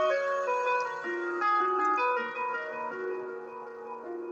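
Background music: a light, tinkly melody of single held notes stepping up and down, a little quieter toward the end.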